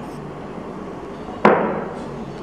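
A tall drinking glass set down on a wooden coaster on a marble tabletop: one sharp knock about one and a half seconds in, dying away quickly, over faint room hiss.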